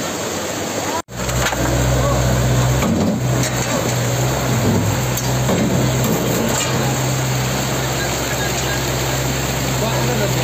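Muddy floodwater rushing over rubble, then, after a cut about a second in, a front loader's engine running steadily under the continuous noise of the water.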